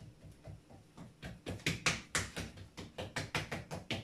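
A run of irregular light taps and clicks from hands working dough on a kitchen counter. It starts about a second in and grows busier toward the end.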